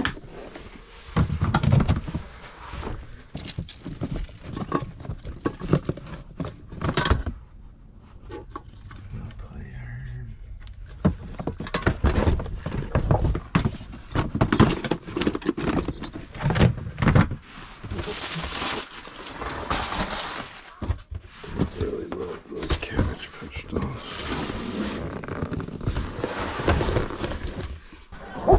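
Cardboard boxes and plastic storage bins being shifted and rummaged through by hand: repeated rustling, scraping and dull thunks, with a quieter stretch about a third of the way in.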